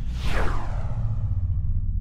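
Outro logo sound effect: a whoosh that sweeps down in pitch over about the first second, over a steady deep bass rumble.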